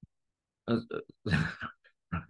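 A man chuckling in a few short bursts, after a faint click at the start.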